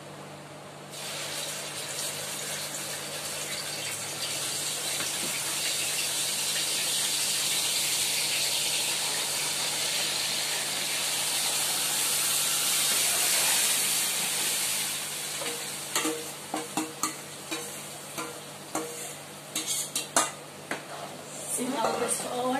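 A watery onion, tomato and green chilli paste hitting hot oil in a kadai, sizzling hard as its water meets the oil. The sizzle starts about a second in, builds, and eases after about fifteen seconds, when a spoon scraping and clinking against the pan takes over as the paste is stirred.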